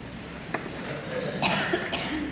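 A man coughing and clearing his throat, a few short bursts in the second half, as he tries to compose himself while choked up with tears.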